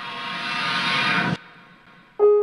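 Water running into a kitchen sink, growing louder and then cutting off suddenly about a second and a half in, with a faint held musical tone underneath.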